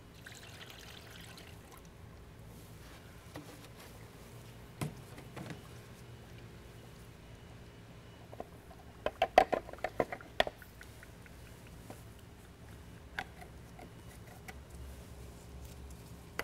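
Distilled water and flush cleaner poured from a plastic jug through a funnel into a car's radiator, refilling the drained cooling system: a faint trickle. A cluster of sharp knocks and clatters about nine to ten seconds in is the loudest sound, with a few single clicks elsewhere.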